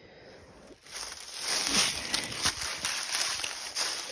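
Footsteps crunching through dry fallen oak leaves, starting about a second in and going on as an irregular run of crackles.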